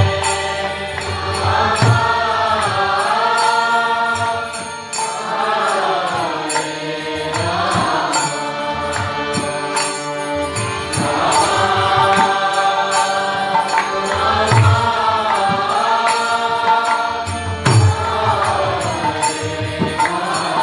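Kirtan: a man's voice leading a devotional chant in long, held, gliding notes, accompanied by a harmonium's sustained reed chords and a two-headed clay mridanga drum with occasional deep strokes.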